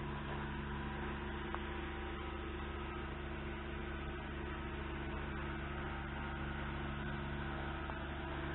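A steady low hum made of several held tones, with an even hiss over it, unchanging throughout.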